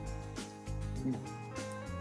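Background music made of held, changing notes.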